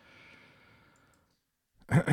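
A man's faint breath out, close to the microphone, lasting about a second; his voice starts loudly near the end.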